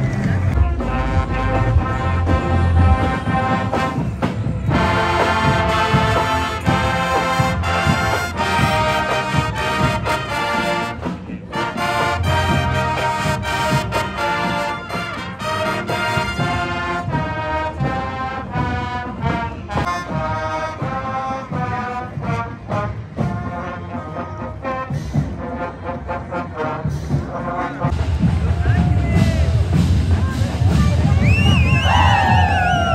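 Marching band playing a tune on brass horns, a quick run of short notes, with a brief break about eleven seconds in.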